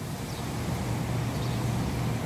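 Low rumble of a road vehicle's engine nearby, growing gradually louder.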